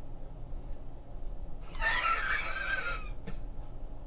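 A man's breathy, high-pitched laugh of excitement, lasting just over a second about halfway in, followed by a faint click.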